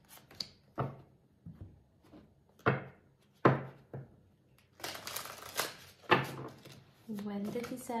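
Tarot cards being handled: a few sharp snaps as cards are set down on the table, the loudest about three and a half seconds in, then about a second of cards shuffling. A voice starts speaking near the end.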